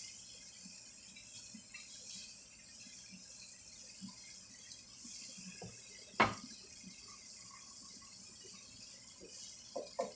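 Quiet kitchen sounds from a frying pan of tofu and potatoes cooking on a gas burner: a faint steady hiss with a few soft taps, and one sharp knock about six seconds in.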